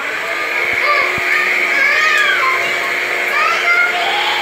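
Upright vacuum cleaner running loud and close, a steady motor hum with rushing air, with high wavering tones over it.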